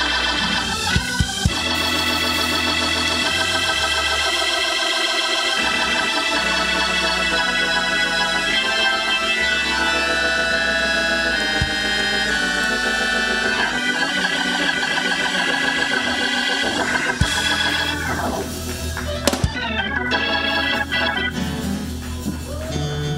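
Organ music from a stage keyboard: sustained chords that change every few seconds. A few short knocks come through about a second in and again near the end.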